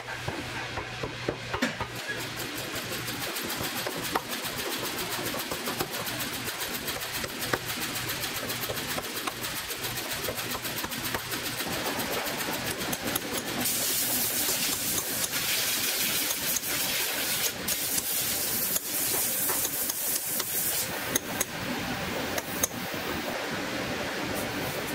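Hammer tapping on a boot's heel and sole, a string of short sharp taps over steady workshop noise. A loud hiss comes in about a third of the way through and stops a few seconds before the end.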